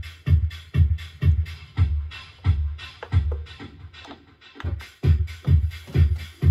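Electronic dance track playing from a Pioneer DDJ-FLX6-GT DJ controller, with a kick drum about twice a second. The beat thins out about four seconds in and comes back a second later.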